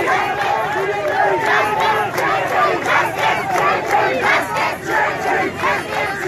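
A crowd of protesters shouting together, many loud voices overlapping with no pause.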